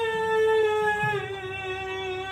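A woman's long, high-pitched wailing cry held on one note and slowly falling in pitch, in a fit that the healer and uploader treat as spirit possession.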